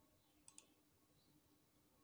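Near silence with a faint computer mouse click, two quick clicks close together about half a second in.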